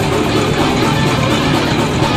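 Thrash metal band playing live: electric guitars and bass over rapid drumming, loud and dense without a break.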